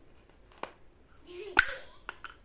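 Two sharp clacks from a wooden sling puck board, a faint one and then a loud one about a second later, as discs are snapped and knocked against the wooden frame.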